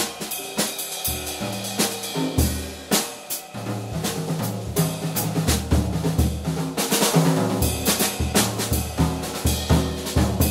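Jazz drum kit taking a solo break in a live band: rapid snare, bass drum and cymbal strokes in quick, irregular succession.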